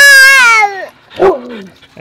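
A toddler's loud, excited squeal, held for about a second with a wavering pitch that falls away at the end. A short, falling vocal sound follows.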